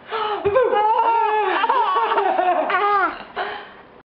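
A six-month-old baby laughing: one long run of high giggles rising and falling in pitch for about three seconds, then a shorter laugh near the end.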